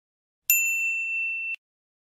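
A single bright, high bell ding, a notification-bell sound effect, that starts about half a second in, rings steadily for about a second and is cut off abruptly.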